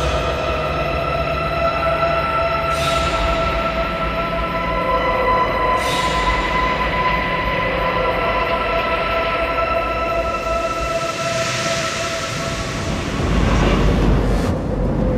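Dark, ominous film score of held tones that shift every few seconds, over a steady low rumbling rush of storm-sea noise. A louder rushing surge builds near the end.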